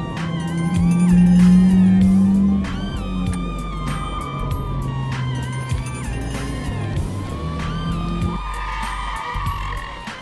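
Music with a bass line and scattered percussive hits, under a police siren wailing slowly up and down. Near the end the bass drops out.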